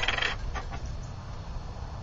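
Wind rumbling on the microphone, with a couple of faint short sounds about half a second in.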